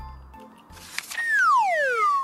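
A cartoon whistle sound effect that slides steadily down in pitch over about a second, starting halfway in and preceded by a short whoosh. Before it, soft children's background music fades.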